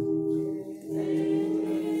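Voices singing a slow communion hymn in long held notes, with a brief pause between phrases just under a second in.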